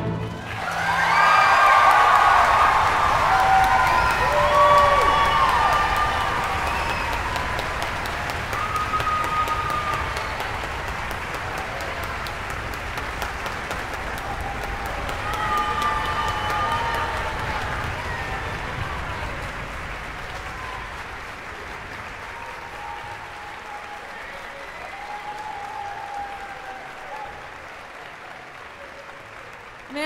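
Concert hall audience applauding, with scattered whoops and cheers, after a piece for piano and orchestra ends. The applause is loudest in the first few seconds and slowly dies away.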